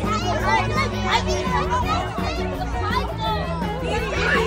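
Many children's voices talking and calling out together over music with a steady bass line.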